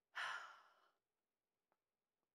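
A woman's short breathy sigh, about half a second long, near the start.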